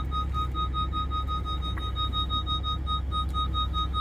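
Lamborghini Huracán parking sensors beeping rapidly in a steady high tone, about seven beeps a second, warning of an obstacle close by, over the low steady rumble of the car's V10 engine.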